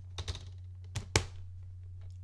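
A plastic scanner film holder clicking and tapping as film negatives are loaded into it: about four short sharp clicks, the loudest just over a second in.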